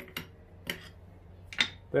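Three sharp metal clicks from a ball screw and its ball nut being turned and worked down into a mill base by hand. The clicks come about half a second to a second apart, and the last is the loudest.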